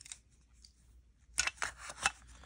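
Plastic cassette tape and its clear plastic case clicking and rattling as they are handled, a quick cluster of sharp clicks in the second half after a quiet start.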